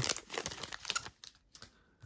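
Upper Deck hockey trading cards being slid out of an opened foil pack and handled: a scatter of light clicks and rustles in the first second or so.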